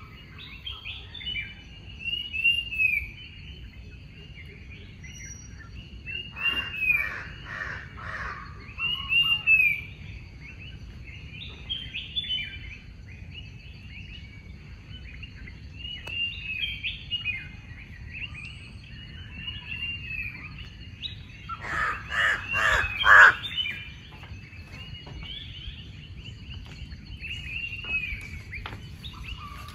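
Forest birds chirping, with repeated short downslurred whistles over a faint steady high buzz. Twice, about seven seconds in and again about twenty-two seconds in, a run of loud, harsh, rapid calls cuts through, the second being the loudest.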